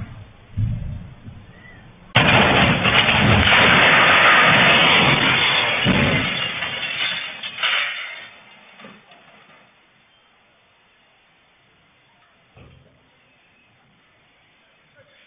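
A bus crashing down from a highway embankment and landing upside down in a courtyard: a sudden loud crash about two seconds in, then several seconds of crashing and clattering that die away, picked up by a security camera's microphone.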